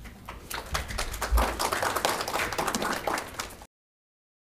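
Audience applauding: a dense patter of hand claps that starts just after the beginning and is cut off abruptly near the end.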